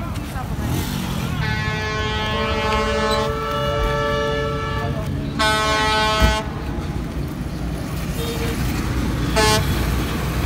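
Vehicle horns honking on a busy road over the rumble of passing traffic: a long steady honk of about two seconds, another of about a second halfway through, and a short toot near the end.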